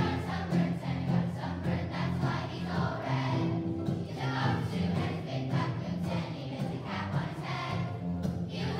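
Children's choir singing a song together, accompanied by acoustic guitars.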